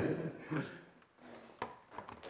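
A mostly quiet stretch with a short murmur of a voice about half a second in and two light knocks near the end.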